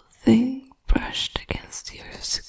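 A woman speaking in a close, soft whisper, with a few words half-voiced.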